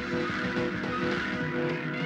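Instrumental rock music led by a sustained, distorted electric guitar over steady held chords.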